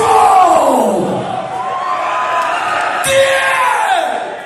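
Live thrash metal band heard from within the concert crowd. A pitched sound slides down over about a second at the start and again near the end, over a steady wash of crowd noise and shouting.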